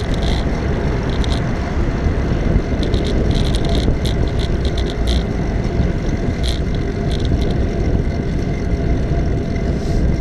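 Steady wind rush buffeting the microphone of a camera riding along on a moving bicycle, with low tyre and road rumble. Short high ticks come now and then.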